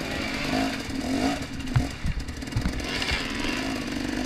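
2014 KTM 250 XC-W single-cylinder two-stroke dirt bike engine running at low revs while the bike rolls slowly, the pitch rising a little with light throttle, with a couple of short knocks near the middle.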